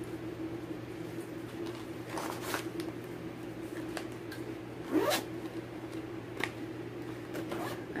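A zipper on a fabric project bag being pulled in short strokes, with rustling as the bag and fabric are handled; the loudest stroke comes about five seconds in. A steady low hum runs underneath.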